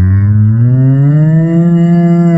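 A single long cow moo, slowly rising in pitch.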